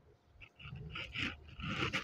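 Faint rustling of a silk saree being moved and spread out by hand, in uneven soft patches that begin about half a second in.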